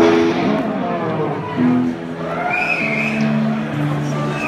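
Live electric guitar and bass guitar starting a song, amplified: a loud first note at the very start, then a few long sustained notes stepping downward in pitch.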